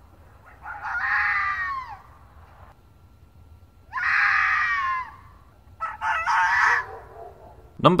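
Red fox screaming: three harsh, high calls, the first two each about a second and a half long and falling in pitch at the end, the third shorter and choppier.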